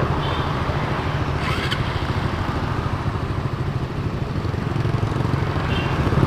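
Motorcycle engines idling in traffic held at a red light: a steady low rumble.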